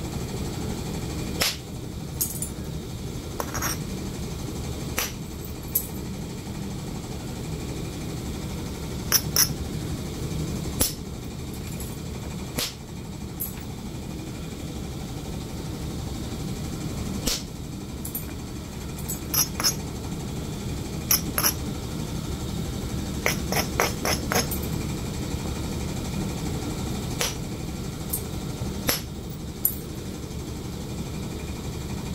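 Copper-tipped billet striking the edge of a raw flint blank, knocking flakes off low platforms: sharp clicks at irregular intervals, about twenty in all, some in quick runs of taps.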